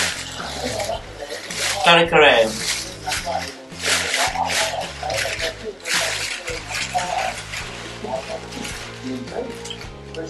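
A thin plastic shopping bag rustling and crinkling in bursts as hands dig a takeaway food container out of it.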